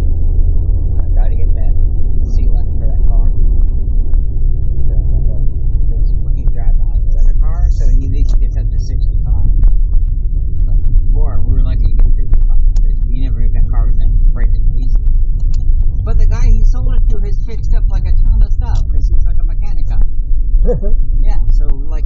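Steady low rumble of a car's engine and tyres heard from inside the cabin while driving, with voices talking now and then over it.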